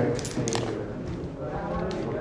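Indistinct overlapping talk from several people in a room, with a few sharp clicks near the start and again near the end.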